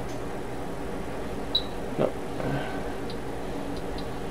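Steady low hum from running bench electronics, with a short high blip about one and a half seconds in and a few faint ticks near the end.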